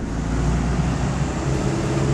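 Car engine running close by: a steady low rumble.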